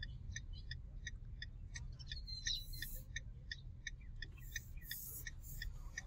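Quiet low rumble of a slowly moving vehicle on the road, with a run of short high pips, about three a second, through the first half or so.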